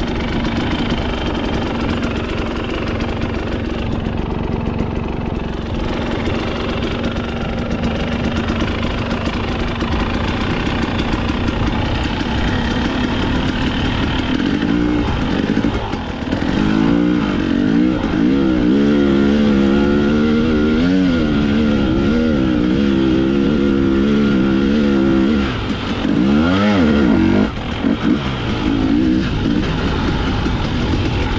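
A fuel-injected two-stroke enduro dirt bike being ridden through sand: the engine runs steadily at first, then from about halfway it gets louder and revs up and down again and again. Near the end the engine drops off briefly, then revs up and down sharply once.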